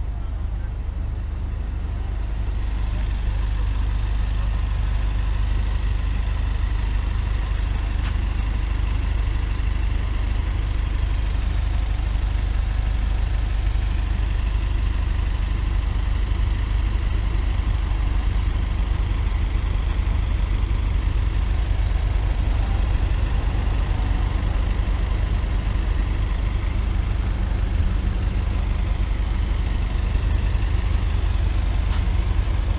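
A large vehicle's engine idling steadily close by, a constant low rumble.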